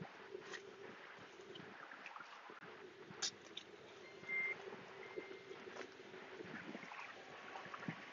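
Quiet: a faint, steady low hum with a few soft knocks and rustles, one slightly louder about three seconds in.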